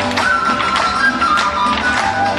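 Live Andean huaylash music from a folk band: a held melody line over a steady pulsing bass beat, with sharp taps falling in the rhythm.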